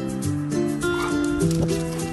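Acoustic guitar background music, with a brief, high puppy cry about a second in.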